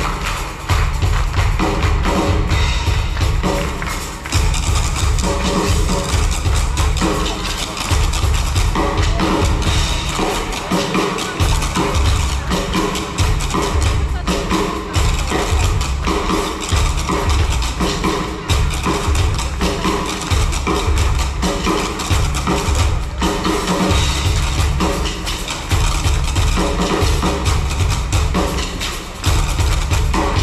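Live band music with drums and a heavy bass line keeping a steady beat, over held notes from other instruments.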